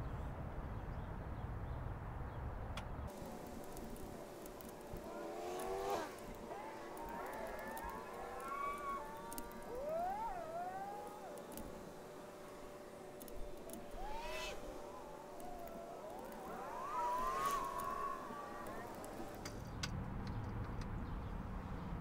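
Faint squeaks and creaks of cylinder-head bolts turning under a torque wrench as the head of a Continental F227 flathead six is torqued down in a first, half-torque pass. Short rising and falling squeals come in several spells, with a few sharp clicks.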